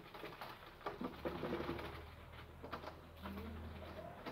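Whiteboard eraser wiping writing off a whiteboard: faint, uneven rubbing strokes. A low steady hum comes in about a second in.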